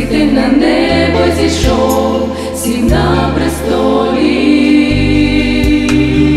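A small ensemble of women singing a Christian song in harmony into microphones, over accompaniment with a low bass line that changes note every one to two seconds.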